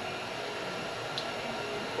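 Steady background hiss of a small garage room, with no distinct event apart from a faint tick about a second in.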